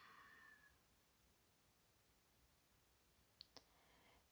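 Near silence in a quiet room, with two faint short clicks in quick succession about three and a half seconds in.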